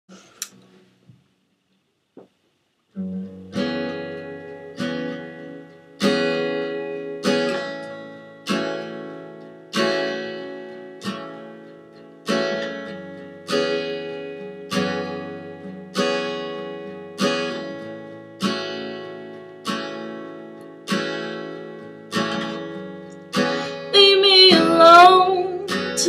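Acoustic guitar played as a song intro: after a few seconds of near silence with a couple of small clicks, chords are strummed about once every 1.2 seconds, each ringing out and fading before the next. A woman's singing voice comes in over the guitar near the end.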